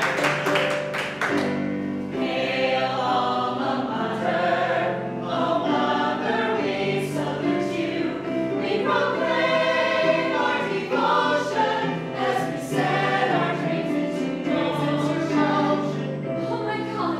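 A stage ensemble singing a musical-theatre number in chorus over a held instrumental accompaniment, with a brief patter of hand clapping in the first second or so.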